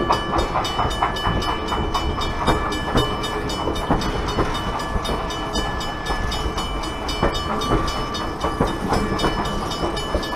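Passenger railcars rolling past close by at low speed. Their wheels and trucks make a continuous low rumble with frequent clicks and knocks over the rail joints, and a faint steady high metallic ring rides on top.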